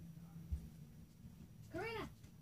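A domestic cat meows once near the end, a single short call that rises and falls in pitch. A short, low thump comes about a quarter of the way in.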